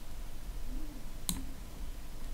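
A single computer mouse click a little past halfway, over a faint low hum.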